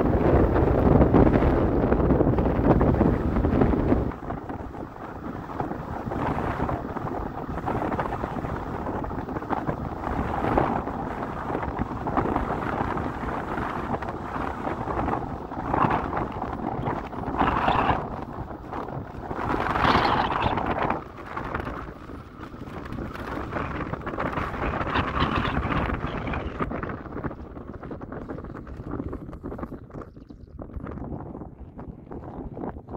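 Strong headwind buffeting the microphone on a moving electric scooter: a heavy, deep rumble for the first four seconds, then lighter gusts that rise and fall, thinning out near the end.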